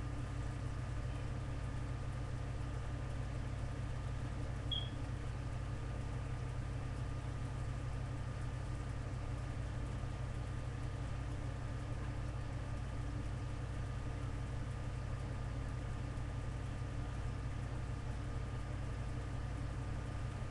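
Steady low background hum with an even hiss and a few faint steady tones above it, unchanging throughout; one faint short click about five seconds in.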